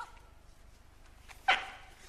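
A short, sharp yelp-like vocal call about one and a half seconds in. It starts loud, its pitch falls slightly and it dies away quickly, over a low steady rumble and a few light taps.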